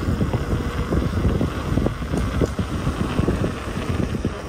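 Wind buffeting the microphone of a camera riding along on a moving bicycle: a steady low rumble that flutters unevenly.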